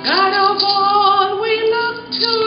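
A woman singing solo, a hymn line: she slides up into one long held note at the start and sustains it, moving to a neighbouring pitch near the end.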